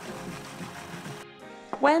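Background music over a food processor running, its steady whir cutting off abruptly a little over a second in.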